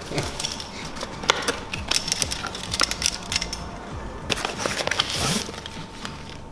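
Bubble wrap being cut with a utility knife and pulled off a package, crinkling and crackling with many small clicks, with a louder rustling burst near the end.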